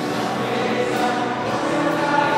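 Choir singing a hymn in long held notes.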